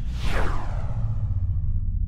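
Title-card sound effect: a whoosh that sweeps down in pitch over about a second and fades, over a deep, steady bass rumble.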